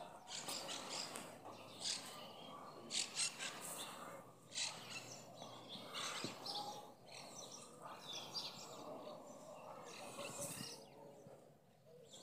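Faint outdoor ambience with birds chirping now and then, and brief scuffs and rustles of feet moving on dry grass during a kung fu form.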